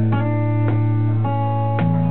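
Live band guitars playing an instrumental passage with no singing. A new chord is struck about every half second over a steady low note.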